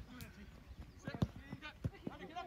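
A few dull thuds of a football being kicked, in the second half, with faint shouts from players.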